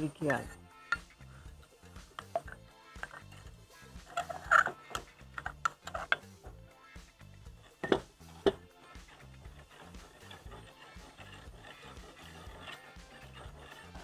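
A steel ladle stirring thick payasam in a clay pot, with a few clinks and knocks against the pot, over soft background music.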